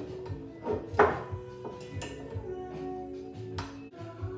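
A cork pulled from a wine bottle with a corkscrew, coming out with a single sharp pop about a second in, over steady background music.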